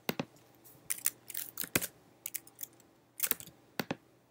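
About a dozen sharp, irregular clicks from a computer keyboard and mouse, with short gaps between them: keystrokes and clicks while switching applications and opening the browser's developer tools.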